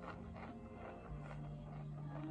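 A crunchy snack chip being chewed, with a few faint crunches, over quiet background music holding low steady notes.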